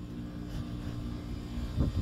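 A steady low mechanical hum, like a distant engine, over a low outdoor rumble.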